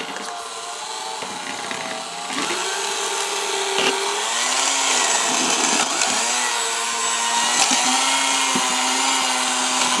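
Electric hand mixer running, its beaters whipping butter into mashed potatoes in a stainless steel pot. The motor's whine wavers in pitch as the load changes and gets louder about two seconds in.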